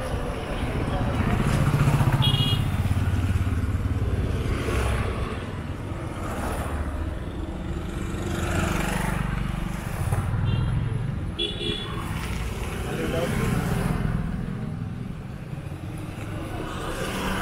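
Small motorcycles and scooters passing on a street, their engines rising and fading as each goes by, loudest about two seconds in. Two short high beeps are heard, once early and again about ten seconds in.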